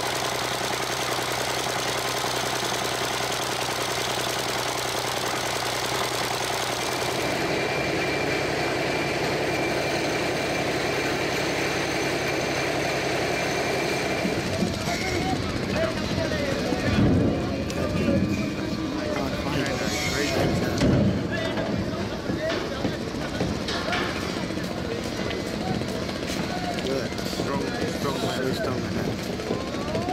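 A large stationary engine with a heavy flywheel running steadily, driving a belt-and-pulley winch. About fourteen seconds in the steady running gives way to a busy riverbank with voices.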